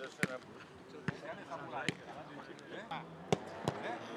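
Footballs being kicked: about five sharp thuds at irregular intervals, the loudest a little after three seconds in, with voices calling in the background.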